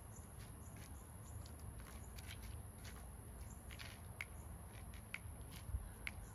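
Faint footsteps, shoe scuffs and a few sharp clicks from one person dancing hustle line-dance steps on the floor without music, over a low steady room hum.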